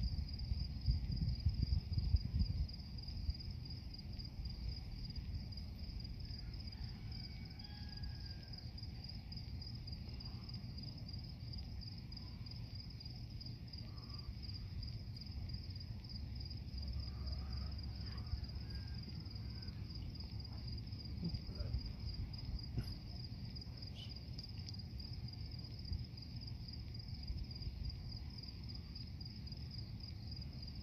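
Crickets chirping in a steady, fast-pulsing high trill over a low rumble that is loudest in the first few seconds.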